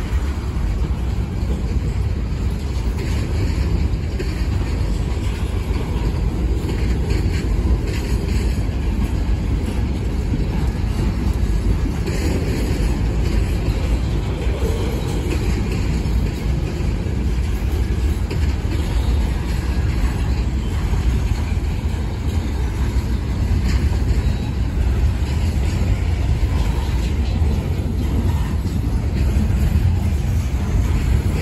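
Freight cars of a long manifest train rolling steadily past: a continuous low rumble of steel wheels on the rails, with occasional sharper knocks.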